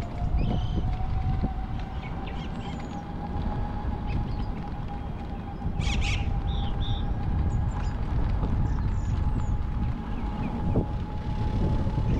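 Scooter riding along a paved trail: a steady motor whine that creeps slightly up in pitch, over a low rumble of wind on the microphone. A few short bird chirps sound above it, with a brief hiss about six seconds in.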